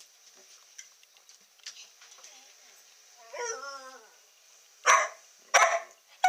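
Young dog barking twice near the end, two sharp, loud barks less than a second apart, after a short sliding vocal sound midway; barking at her owner for attention.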